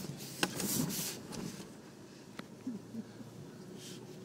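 Cabin noise of a Toyota Prado 4WD driving along a dirt track: a low steady engine drone, with a short burst of rustling noise and a sharp knock in the first second or so and another sharp click about two and a half seconds in.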